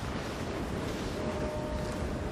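Steady rush of wind and sea surf on the microphone.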